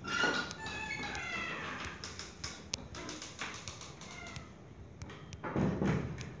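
A few high-pitched wavering calls sliding down in pitch in the first two seconds, with scattered light taps and a louder low-pitched thump or voice-like burst near the end.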